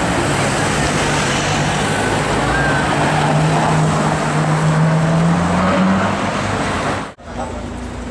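A Ferrari FF's V12 engine driving past close by in street traffic, a steady engine note that rises slightly in pitch and is loudest a few seconds in. Near the end the sound cuts off abruptly to quieter street noise.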